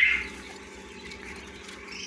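Young quail chicks in a brooder peeping softly, with a brief louder chirp right at the start, over a faint steady hum.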